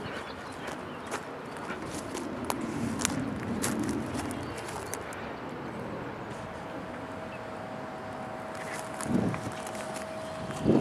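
Outdoor background noise with scattered light rustles and clicks, as of movement in grass near a microphone. A faint steady hum joins about six and a half seconds in.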